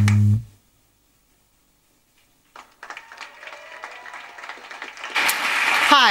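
A music track ends on a held bass note, followed by about two seconds of silence. Then audience applause starts faintly and swells loudly about five seconds in.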